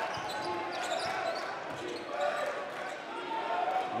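Basketball game sound in a gym: a ball being dribbled on the hardwood court among the voices of the crowd and players.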